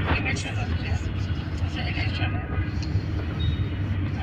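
Voices talking close by over a steady low rumble.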